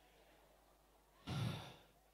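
Near silence, then about a second in a man's short sigh into a handheld microphone, lasting about half a second.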